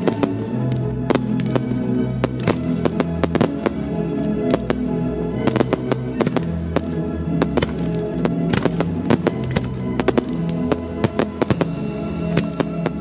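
Aerial fireworks bursting and crackling, many sharp cracks in quick clusters, over orchestral classical music with long held notes.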